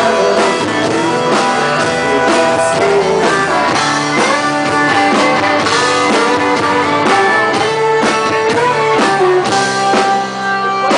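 Live country band playing an instrumental passage: strummed acoustic guitar and electric guitar over a steady drum beat, with a fiddle in the band.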